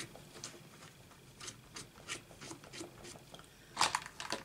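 Light clicks and rubbing from a clear acrylic stamp block being handled and wiped on a craft mat, ending in a sharper clack near the end.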